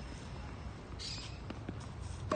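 Two faint, short knocks of a tennis ball from across the court over a steady low background rumble, with a brief hiss about a second in.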